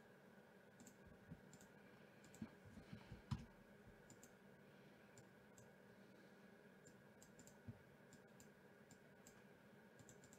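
Faint computer mouse clicks over near-silent room tone, with a short run of louder clicks about two to three seconds in and a single one near the end.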